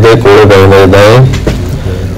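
A man talking over the steady low hum of a car driving along.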